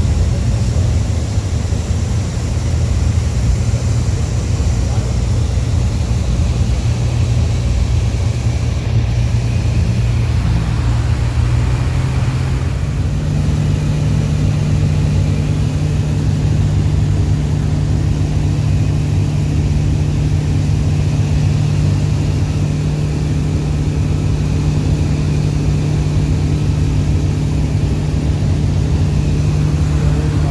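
Light aircraft's piston engine and propeller running steadily at cruise power, heard from on board the plane. About 13 seconds in, the engine note steps up to a higher pitch and holds there.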